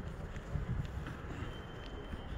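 Wind buffeting the microphone outdoors: an uneven low rumble, with a few faint ticks.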